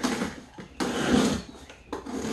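A cardboard box being opened by hand: packing tape pulled off and cardboard flaps scraping and rustling, in two bursts, the second and longer about a second in.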